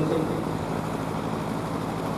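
Steady whooshing noise of a large electric pedestal fan blowing near open stage microphones, picked up through the sound system.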